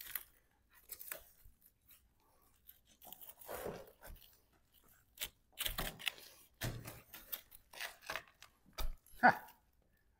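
Thick plastic landscape edging being peeled off the edge of cured concrete pavers. It gives a string of irregular crackles, scrapes and short snaps as it comes free of the concrete.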